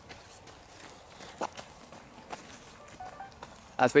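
Faint footsteps on an outdoor path, a few soft irregular steps against a quiet background. A voice starts right at the end.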